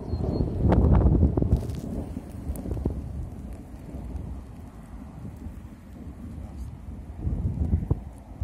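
Wind buffeting the microphone as a low rumble, loudest about a second in and again near the end, with a few light clicks and rustles of grass being handled.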